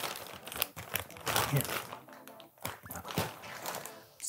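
A clear plastic bag crinkling in irregular bursts, really loud, as flat power-supply cables are pulled out of it by hand.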